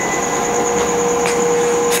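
Steady mechanical hum and rushing noise, with a constant mid-pitched tone and a thin high whine held over it.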